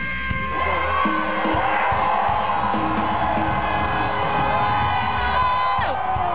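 Rock band playing live at a steady loud level, with long held notes bending up and down in pitch over bass and drums, and audience noise mixed in.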